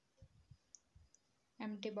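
A few faint low knocks and one small sharp click as a plastic hand wash bottle is handled and set on the counter, followed by a woman speaking near the end.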